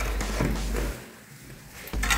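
Rustling and a few light knocks as materials are picked up and handled, over a low hum, then fading to quiet about a second in.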